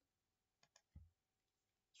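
Near silence: room tone with two faint short clicks a little over half a second in and a soft low thump about a second in.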